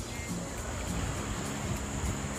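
Wind buffeting a phone microphone on an open beach, with the wash of small waves, and background music faintly underneath; a steady high-pitched hiss runs through it.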